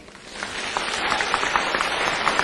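Audience applauding, building up within the first second into steady clapping from many hands.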